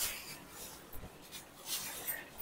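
Soft rustling of a silk saree as it is unfolded and spread open by hand, with a brief swell of rustle at the start and another near the end.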